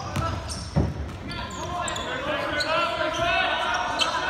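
A basketball bouncing on a hardwood gym floor, with a loud thud about 0.8 s in. Sneakers squeak and players' and onlookers' voices call out, echoing in the hall.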